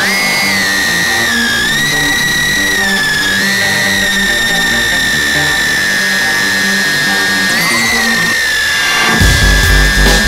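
Tiny whoop drone's motors whining at a high pitch, the whine dipping and rising with throttle, over electronic background music. A heavy pulsing bass beat comes in near the end.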